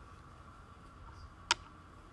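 A wooden chess piece set down on the board with a single sharp click about one and a half seconds in, over faint room tone.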